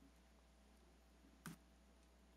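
Near silence: room tone with a low steady hum, broken by one short click about one and a half seconds in.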